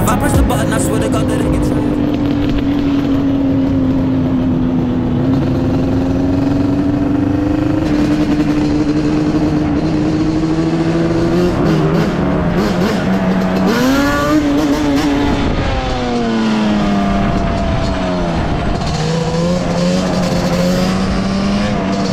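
Yamaha Banshee 350's two-stroke twin engine running under way, holding a steady pitch for about twelve seconds, then rising and falling a few times as the throttle changes.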